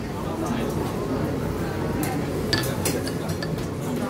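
A ceramic soup spoon clinks a few times against a terracotta Yunnan steam pot as chicken soup is scooped up, the clinks bunched together past the middle. Behind it is the steady hubbub of a busy restaurant.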